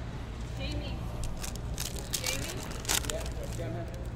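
Glossy trading cards being handled and shuffled by hand, with a run of short crackling snaps in the middle. Underneath are a steady low hum and faint background chatter.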